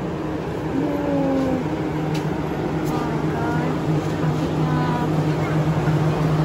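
A steady low mechanical hum with faint voices talking briefly in the background.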